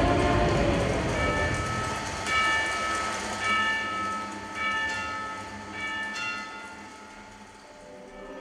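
Audience applause, fading steadily over several seconds, with short held tones sounding above it about once a second.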